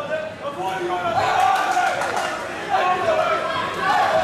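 Several men shouting over each other in a large hall, calling out during a kickboxing bout. A few sharp knocks come about a second and a half in.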